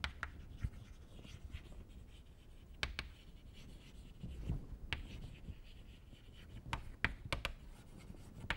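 Chalk writing on a chalkboard: faint scratching strokes punctuated by sharp taps of the chalk against the board, several in quick succession near the end.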